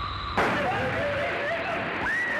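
Water suddenly bursting out and spraying hard from a swollen hose, starting with a loud rush about half a second in and hissing on steadily, with voices over it.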